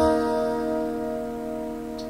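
Indie rock song: a single chord held and slowly fading, with no new strikes.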